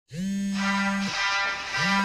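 Two long buzzy electronic tones at the same pitch, each about a second long and each sliding up into pitch as it starts, with a short gap between them.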